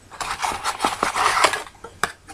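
Packaging and accessories being handled in an unboxing: a dense run of small clicks, rustles and scrapes that starts a moment in and stops just before the end.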